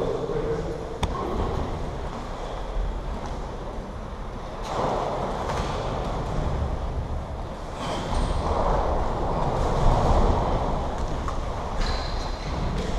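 Low rumbling and scuffing of feet moving on the boxing ring floor, picked up by a camera resting on the canvas, swelling twice and with a sharp click early on.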